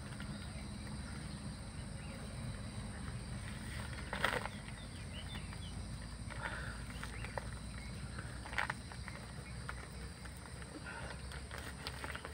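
Outdoor ambience: a steady low rumble with faint, scattered bird-like chirps, and two short crackles from the woven plastic sack being handled, about four and about eight and a half seconds in.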